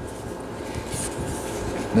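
Paper rustling as the pages of a thick paperback comic collection are turned by hand, a soft continuous noise with no distinct clicks.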